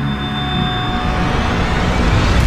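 Dark intro sound design under a logo sting: a steady low rumble with thin, steady high tones that fade out a little over a second in.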